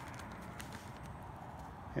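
Faint crinkling of a sheet of wax paper being handled over a painted wooden deck, a few light rustles against a quiet background.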